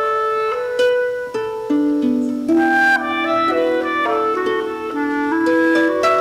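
Clarinet and harp duet: the clarinet plays a held, flowing melody while the harp plucks notes beneath it.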